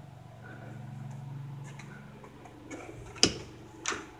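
A door's lever handle and latch clicking as the door is opened: a sharp click a little past three seconds in and a softer one just before the end. A low steady hum runs underneath.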